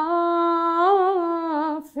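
A woman singing unaccompanied, holding one long note that wavers slightly upward near the middle, then starting the next phrase.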